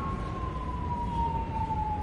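A single clear, high whistling tone that slowly falls in pitch, over a low background rumble.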